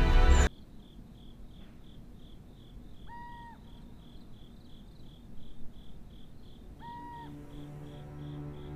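Night ambience of a cricket chirping in a steady, evenly spaced rhythm. A short pitched call sounds twice, a few seconds apart. A low, sustained music tone comes in near the end.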